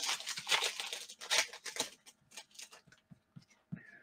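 Foil wrapper of a trading-card pack rustling and crinkling as the stack of cards is pulled out, a busy run of rustles over the first two seconds that thins to a few faint clicks.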